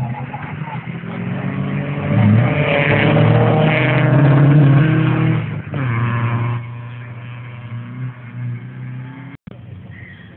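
Rally car's engine at high revs as it passes close by on a dirt special stage, loudest about two to five seconds in, then dropping off and fading as it drives away. Wind buffets the microphone.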